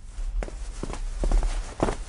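Footsteps: a few irregular steps as people walk into a room, over a steady low hum.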